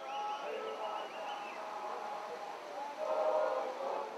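Several voices of players and spectators shouting and calling over one another across a football pitch, louder about three seconds in. A high whistled note is held through the first second and a half.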